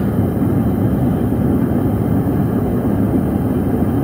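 Gas burners of a small kaowool-lined metal-melting foundry running steadily with a low, even rushing noise, lid on, during the furnace's first preheat firing.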